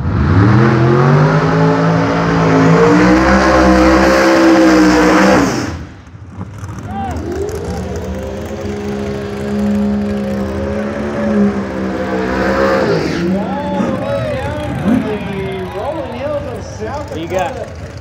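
Drag racing car engines at full throttle, very loud. The first starts suddenly and rises in pitch for about five seconds before cutting off. After a short gap a second engine runs at a steadier pitch for about six seconds.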